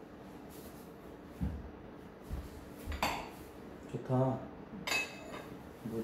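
Glassware being handled on a countertop: a few soft knocks, then two sharp glass clinks with a short ring, about three and five seconds in.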